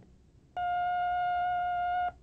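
A single steady electronic beep, mid-pitched and about one and a half seconds long, starting about half a second in. It is the tape's signal tone that opens the drill just announced.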